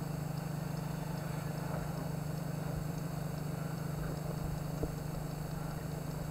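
A steady low hum over faint hiss, holding at one level throughout.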